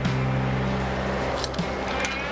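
Steady low drone of a Caterpillar 988K XE wheel loader's engine running while it holds its load, under background music.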